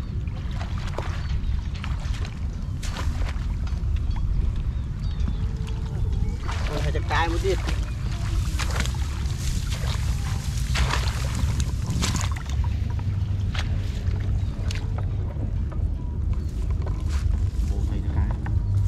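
Shallow muddy water splashing and sloshing as a woven bamboo basket is scooped through grassy floodwater and lifted out, with scattered short splashes and rustles over a steady low rumble.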